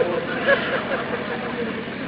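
A pause in a man's spoken comic monologue: his last word trails off at the start, then a steady background hiss with faint murmuring voices.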